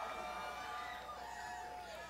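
Faint cheering and whoops from a few audience members, several voices overlapping in drawn-out calls that fade slightly near the end.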